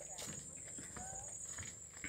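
Footsteps on a wooden plank boardwalk: faint, fairly even knocks of shoes on the boards. A steady high-pitched whine runs underneath, and a faint gliding voice-like sound comes about a second in.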